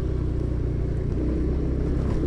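Motorcycle engine running at a steady low speed while being ridden, a constant low hum with no change in pitch.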